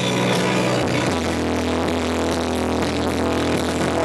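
Loud live electronic music with held bass notes; the bass steps down to a lower note about a second in.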